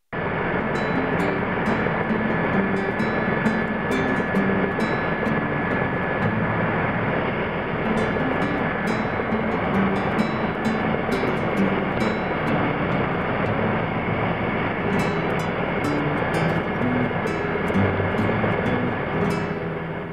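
Loud, steady engine and airflow noise from inside the cabin of a small aircraft in flight, with a thin steady whine; it cuts in suddenly. Faint music can be heard underneath.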